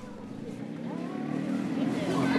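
A motor vehicle's engine, a low steady hum that grows steadily louder as it approaches.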